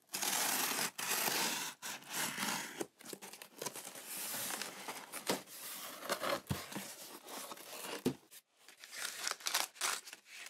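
Scissors drawn along the packing tape on a cardboard box's seam, ripping the tape open for about the first three seconds. Then cardboard flaps and paper wrapping rustle and crinkle as the box is opened, with two short thumps in the second half.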